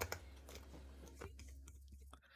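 Hands handling a small rubber RC crawler tire on its wheel: a few faint clicks and crackles, the sharpest right at the start.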